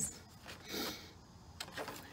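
Paper pages and card dividers of a ring-bound planner being turned and handled: a soft rustle a little under a second in, then a few light ticks.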